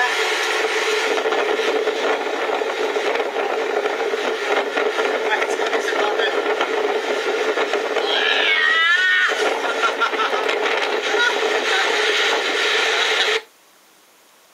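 Ventilation blower sending out a steady rush of air with a constant hum, cutting off suddenly shortly before the end.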